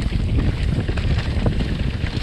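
Wind buffeting an action camera's microphone over the rumble of mountain bike tyres rolling down a dirt trail, with scattered short clicks and rattles from the bike.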